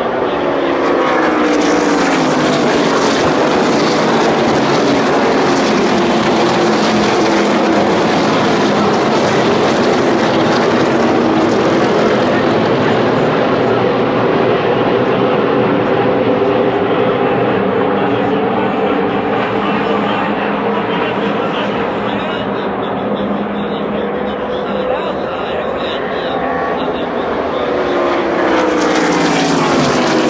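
A pack of NASCAR stock-car V8 engines racing around the track: the engines fall in pitch as the field goes by early on, carry on as a steady massed drone from the far side of the track, and rise in pitch again as the pack comes back near the end.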